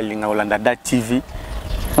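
A man talking, then a low rumble of a passing motor vehicle in the last half second.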